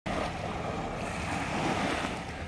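Steady wash of sea surf at the shore, with wind rumbling on the microphone.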